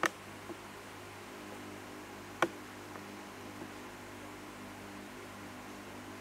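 Steady low hum with a faint hiss, broken by two short sharp clicks: one at the very start and one about two and a half seconds in.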